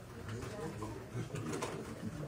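Low, indistinct murmur of people talking among themselves across a meeting room, with no clear words.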